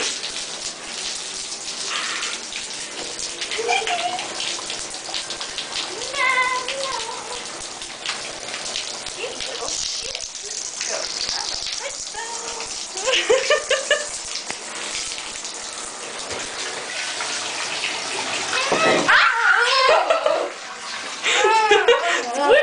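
Water running steadily from a bathtub tap into the tub, an even rush throughout.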